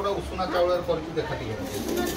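Indistinct voices talking in the background, not clearly made out.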